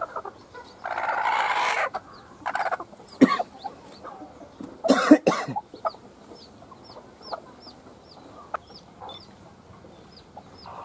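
A hen clucking and squawking as she is handled and set down on a bowl of eggs to brood, with a burst of scuffling about a second in and a louder squawk near the middle. A fast, high peeping repeats steadily in the background.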